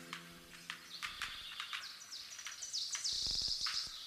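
Faint high bird-like chirps and scattered clicks, busiest a little after three seconds in, while the last low note of the music dies away in the first second.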